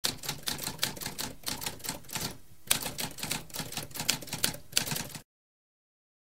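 Typewriter keys clacking in a fast run of strokes, with a short pause about halfway through, cutting off a little after five seconds in.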